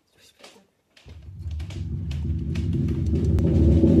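Timpani (kettledrum) roll played with felt mallets, starting about a second in and growing steadily louder in a crescendo, a sustained low pitched rumble.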